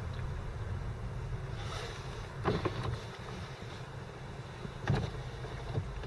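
Low steady rumble of a car idling or creeping forward in a queue, heard from inside the cabin, with a couple of short knocks about two and a half and five seconds in.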